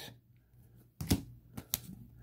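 A few faint, sharp clicks of a hard clear plastic card holder being handled in the fingers: one about a second in, then two close together near the end.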